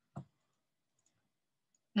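Small earrings handled and drawn out of a little velvet jewellery bag: one soft tap shortly after the start, then a few faint tiny clicks.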